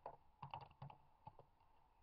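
Faint computer keyboard keystrokes: a quick run of taps that stops about a second and a half in.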